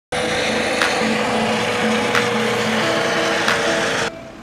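Helicopter in flight, its engine a loud, steady noise with a whine. The sound cuts in abruptly just after the start.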